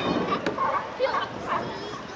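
California sea lions barking in short, repeated calls, several a second, over the chatter of people.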